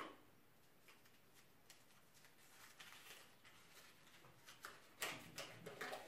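Near silence with faint paper rustling and small crinkles as a sheet of paper is unfolded by hand, growing a little busier near the end.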